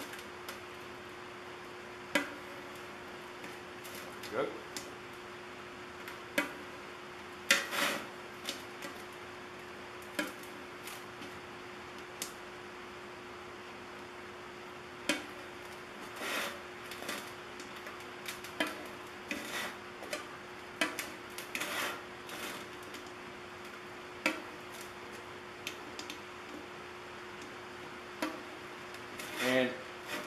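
A multi-tool blade punching and prying slots into the tinplate lid of a coffee can: irregular sharp metallic clicks and scrapes, scattered throughout, over a steady low hum.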